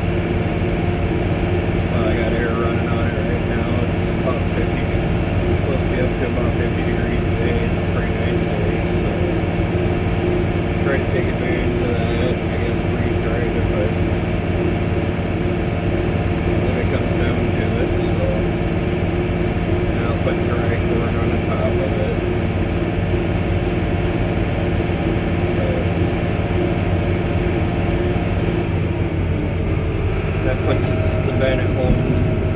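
Tractor engine running steadily under way on the road, heard from the driver's seat, a constant even hum.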